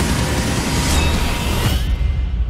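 A loud, deep rumble with a rising whoosh, used as a trailer transition effect; the high end cuts away near the end, leaving only the rumble.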